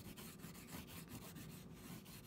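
Red oil pastel rubbed hard and fast back and forth on paper: a faint, even scrubbing made of many quick strokes.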